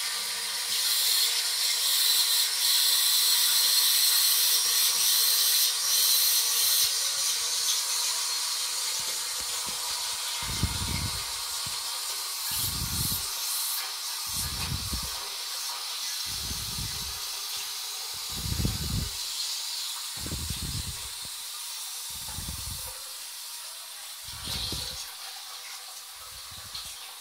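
Royal Venton New Coronet low-level toilet cistern filling with water, a steady hiss that is loudest in the first few seconds and then slowly eases. From about ten seconds in, short low thumps come about every two seconds.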